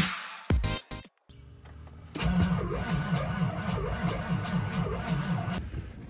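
Electronic music cuts off about a second in. Then a Ford F-350's 7.3L V8 cranks over on its starter for about three and a half seconds without firing, stopping just before the end: a cold-weather no-start.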